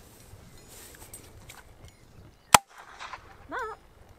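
Gundog dummy launcher fired once: a single sharp shot a little past halfway, launching a training dummy for the dog to retrieve.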